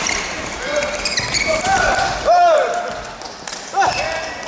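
Badminton players' court shoes squeaking on the sports-hall floor during a rally: several short, arching squeaks about two seconds in, and a sharp hit near the end.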